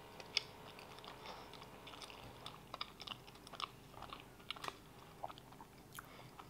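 A person chewing a mouthful of flaky, filled round croissant with the mouth closed: quiet wet mouth sounds with many small, irregular clicks and crackles.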